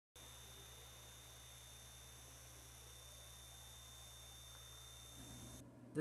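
Faint, steady hum of a Caframo Tiny Tornado battery-powered personal fan running, with thin high steady tones over a low hum; it cuts off suddenly shortly before the end.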